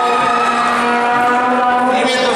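Live cueca music holding one long steady note, the closing note of the dance, which fades near the end.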